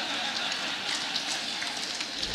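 Audience applauding, a dense patter of many hands clapping.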